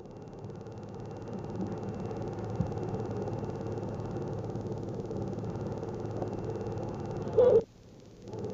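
Steady mechanical running noise with a low hum and a fast, even flutter. A short, loud, pitched sound like a brief voice cuts in near the end.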